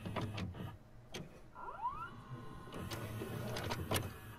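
Videocassette recorder mechanism engaging play: scattered mechanical clicks, then a small motor whining up in pitch about halfway through and settling into a steady hum with more clicks near the end.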